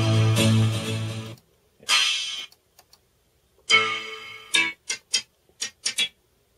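Virtual steel-string acoustic guitar from a software plugin strumming chords in a tempo-locked pattern. Ringing chords cut off sharply about a second and a half in, followed by two separate strums that ring and fade, and then a quick run of five short, choked strokes near the end.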